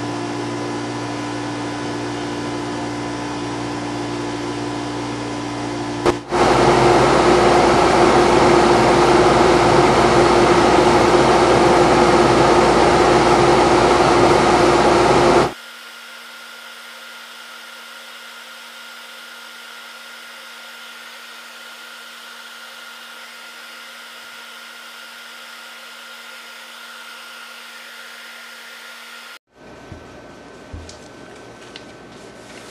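Wood lathe running steadily with a bowl spinning on it as finish is wiped on. It is heard in three spliced takes: a steady hum for about six seconds, a sudden cut to a louder, hissier stretch until about fifteen seconds in, then a cut to a quieter steady hum.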